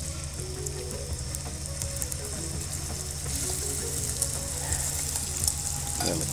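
Freshly added chopped onions sizzling and crackling as they fry in a pan, the sizzle growing louder about three seconds in.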